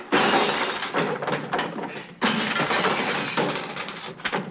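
Crashing and breaking noise with glass shattering, a long clatter of smashing objects. It drops briefly about two seconds in, then a second burst follows.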